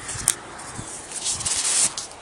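Handling noise of a phone being moved at close range. There is a sharp click about a third of a second in, then nearly a second of loud scraping and rubbing against the microphone near the end.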